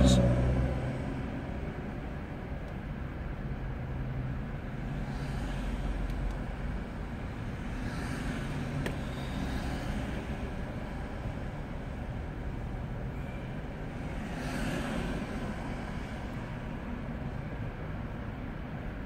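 Steady low hum of a car waiting in traffic, heard from inside the cabin, with other cars passing by a few times.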